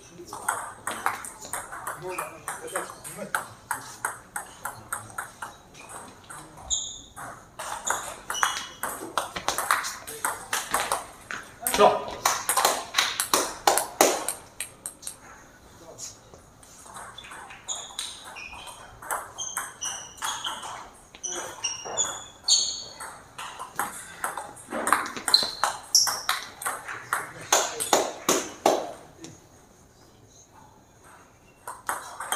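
Table tennis rallies: a celluloid-style plastic ball clicking off rubber-covered paddles and bouncing on the table in quick back-and-forth series, with a short break between points about halfway through.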